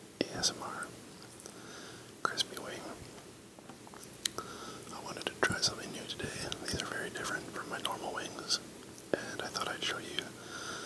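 Soft whispering close to the microphone, with sharp mouth clicks and lip smacks between the words.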